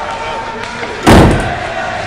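A self-closing exit door, one leaf of a double door, swinging shut and slamming once about a second in, with a brief ring-out.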